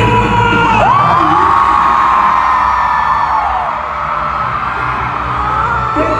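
Live K-pop concert sound in a large arena: backing music with a singer who slides up and holds a long high note from about a second in, over the crowd's cheering and screaming.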